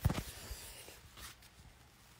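A phone being shifted in the hand against a fabric couch: a short bump at the start, then faint rustling.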